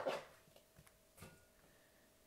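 A knife chops through watermelon and knocks once on a plastic cutting board at the start, followed by a few faint soft cutting taps.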